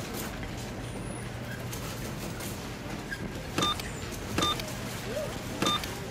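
Supermarket background sound: a steady low electrical hum with faint shop noise. Three short electronic beeps come in the second half, about a second apart.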